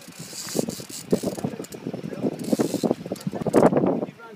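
Fishing reel ratcheting in rapid, dense clicks as line moves on a hooked mahi-mahi, with two short spells of higher hiss and the loudest clicking near the end.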